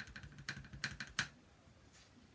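A quick run of small plastic taps and clicks as a clear acrylic stamp block and an ink pad are knocked together while the rubber stamp is inked. The sharpest tap comes at about a second, and the tapping stops about a second and a half in.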